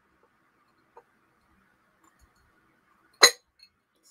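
A single loud, sharp clink of glass on glass as the blue slag glass nesting hen's lid knocks against its basket-weave base near the end, after a faint knock about a second in.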